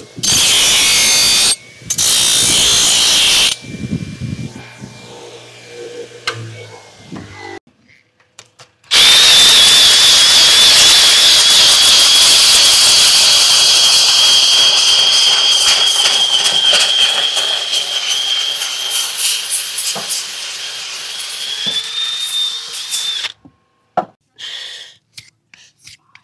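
A belt grinder grinding steel for the first few seconds, with a brief break, then stopping. From about nine seconds a cordless grinder with a sanding disc runs against a horse's hoof wall, a steady high whine over the noise of the sanding for about fourteen seconds, stopping shortly before the end.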